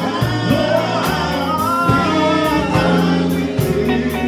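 Men's gospel quartet singing live, a lead voice over backing voices, accompanied by electric bass guitar and drum kit.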